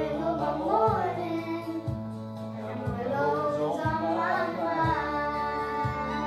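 Two young girls singing a slow country song in unison over instrumental accompaniment, with a low bass note about once a second.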